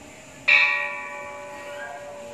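Large hanging bronze temple bell struck once about half a second in, ringing on with several steady overtones and slowly fading.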